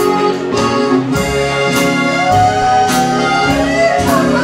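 Live country band playing an instrumental passage with a Hohner piano accordion carrying the melody over upright bass, guitars and drums, with no singing.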